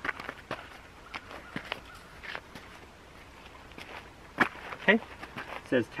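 Feet shuffling and scuffing on gravelly dirt as a person turns in place, with scattered light clicks and two louder knocks between four and five seconds in.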